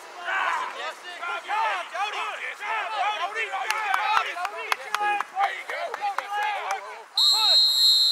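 Several children's voices chattering and calling out at once on a practice field. Near the end, a coach's whistle gives one long, steady blast.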